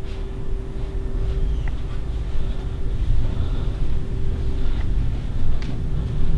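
Low, uneven rumble of a handheld camcorder being carried while walking through an empty carpeted house, with a few faint clicks and a steady faint hum underneath.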